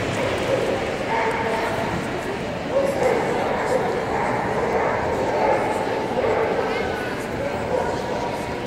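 A dog barking and yipping repeatedly, over the voices of people in a large hall.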